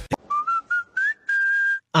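A person whistling: about five short notes stepping upward in pitch, then one longer held note that cuts off sharply.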